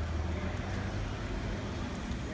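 Street ambience with a low, steady rumble of vehicle traffic.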